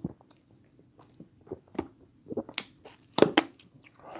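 A man gulping grape soda from a plastic bottle: irregular swallowing and wet mouth clicks, with a sharp cluster of clicks and crackles about three seconds in.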